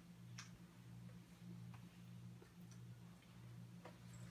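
Near silence: a steady low hum with a few faint, short ticks.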